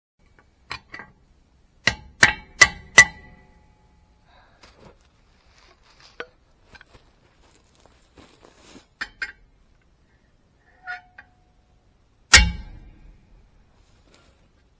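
Hammer blows on steel: four quick ringing clangs about two seconds in, some lighter metallic taps and clinks, then one heavy blow near the end, the loudest, ringing on afterwards. The blows land on the lug nuts and the wrench fitted to them, to shock loose lug nuts that are seized on a truck wheel.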